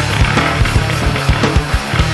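Heavy nu-metal band playing with no vocals: distorted guitars and bass under regular, hard kick-drum hits.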